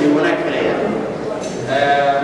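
A man speaking at a podium.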